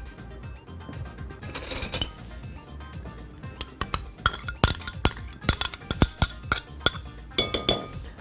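Metal spoon clinking against a glass mixing bowl as thick yogurt is spooned in and knocked off the spoon: many sharp, ringing taps, coming thick and fast in the second half.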